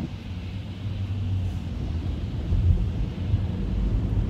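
Cabin noise of a Tesla electric car pulling away from a stop on a wet road: a low rumble of tyres on water with a faint hiss, growing slightly louder as the car speeds up, with a few soft low thumps near the end.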